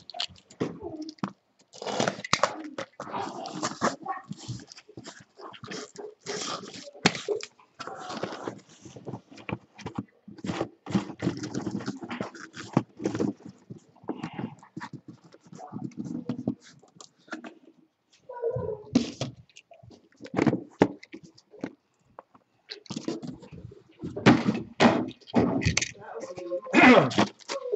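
Cardboard shipping case of trading-card hobby boxes being opened by hand, and the small boxes pulled out and set down in a stack. It comes as an irregular run of scrapes, taps and knocks of cardboard on cardboard.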